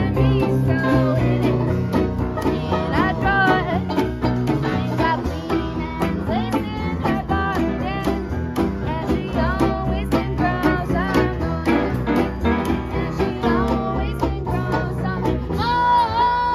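Small acoustic jazz band playing: upright piano, double bass, clarinet, trombone and guitar, with a bending melody line over a steady beat.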